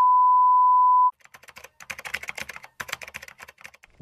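A steady, loud test-card beep tone that cuts off suddenly about a second in, followed by a quick patter of computer keyboard typing clicks.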